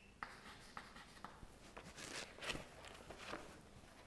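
Chalk writing on a blackboard: faint scratching strokes with a few light taps.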